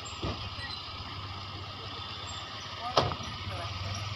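Street noise with a vehicle engine running and voices, and one sharp knock about three seconds in.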